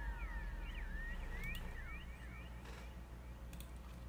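Faint tail of a TikTok clip's soundtrack: a flurry of quick chirp-like rising and falling pitch glides that die away about halfway through, over a low steady hum, with a few faint clicks near the end.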